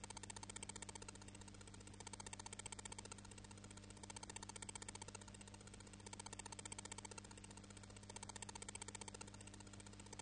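Near silence: a faint steady electrical hum from the hall's microphone and sound system, with a faint fine buzz that comes and goes about a second on, a second off.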